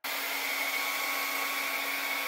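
Handheld hair dryer blowing hot air onto cotton socks to dry them: a steady rush of air with a low motor hum and a faint high whine above it.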